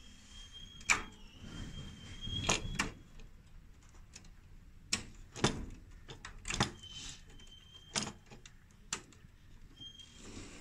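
Plastic wire-harness connectors being worked loose and pulled off a gas fan heater's circuit board by hand: irregular sharp clicks and small knocks, with light rustling of the wires between them.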